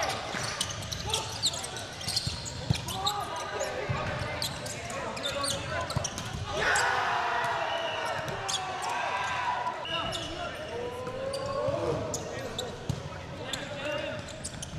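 Volleyball play in a gym: players' voices calling out over many short sharp knocks of the ball being hit and bouncing on the hardwood floor. The calling is strongest about halfway through.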